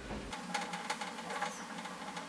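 Dry-erase marker writing on a whiteboard: a quick run of short strokes and taps as the letters are drawn.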